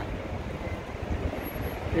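Steady city traffic noise at a busy intersection: a low rumble of passing cars.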